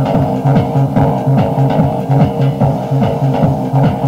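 Electronic dance music from a club DJ mix played back from a cassette tape rip: a steady, fast kick-drum beat under a pulsing bass line.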